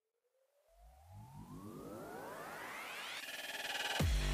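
Synthesized riser transition effect: several tones sweep steadily upward and grow louder over about three seconds, with a low rumble coming in about a second in, building toward a hit.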